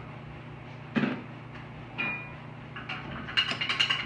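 Metal spoon knocking and clinking against a ceramic bowl of pizza sauce: one knock about a second in, a short ringing clink about two seconds in, and a quick run of clinks and scrapes near the end, over a steady low hum.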